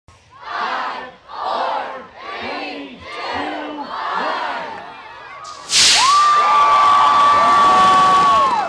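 A crowd calls out a countdown in unison, five counts about a second apart. Then comes a sudden loud rush as thousands of model rocket motors ignite at once, and the crowd cheers over it with a long held whoop.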